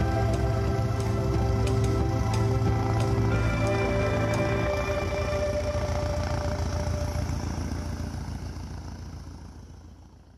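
Instrumental soundtrack music with held notes, fading out over the last few seconds.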